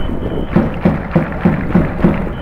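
Stadium cheering music from the crowd, a steady beat about three to four times a second.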